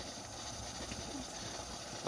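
Steam wand of a Capresso four-cup espresso machine hissing steadily in a mug of milk, heating it.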